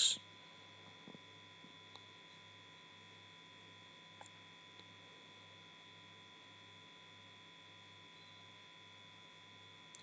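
Faint steady electrical hum and whine, with a low buzz pulsing about twice a second and a few faint ticks.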